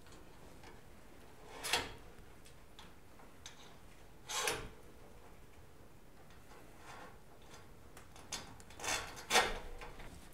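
Thin steel safety cable for a garage door extension spring being threaded through the holes of a perforated metal hanger. It makes a few short scrapes and clicks of cable and strap against metal, spaced a couple of seconds apart and bunching up near the end.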